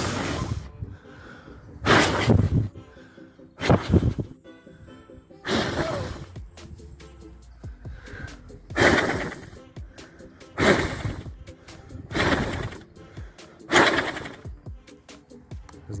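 A person blowing hard in short puffs, about eight in all, roughly every couple of seconds, to push the blades of a homemade PVC-pipe wind turbine round. Faint background music plays underneath.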